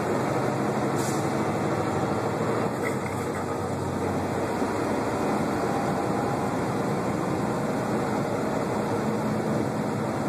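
Semi-truck driving at steady speed, heard from inside the cab: a continuous drone of engine and tyre-on-road noise.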